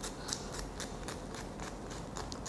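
Metal nail file rasping against a Pomeranian's claw in short, quick strokes, about four a second.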